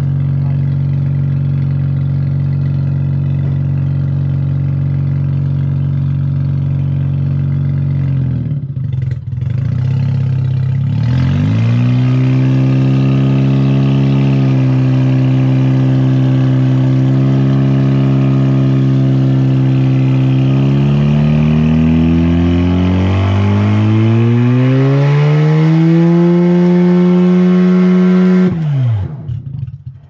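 Mazda RX-8's two-rotor Renesis rotary engine heard at the tailpipe, idling steadily and then held at raised revs. The revs dip briefly about eight seconds in, climb again past twenty seconds and fall away sharply just before the end. The engine is blowing thick exhaust smoke, a fault the owner is thinking of curing with new apex seals.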